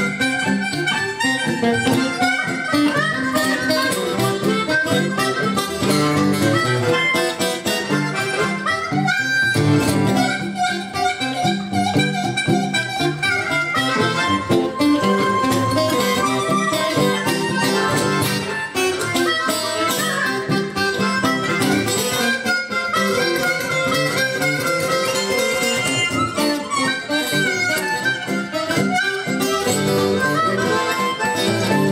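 Blues harmonica solo, the harp cupped in the hands against a vocal microphone, over strummed acoustic guitar accompaniment.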